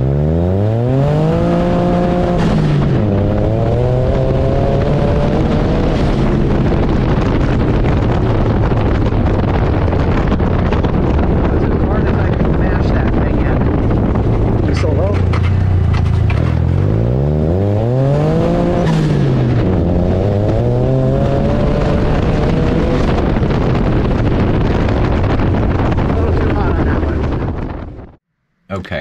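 Turbocharged buggy engine at full throttle, twice revving hard through first gear, dropping in pitch at the shift and pulling again in second. A short hiss at each shift is the blow-off valve venting as the throttle closes.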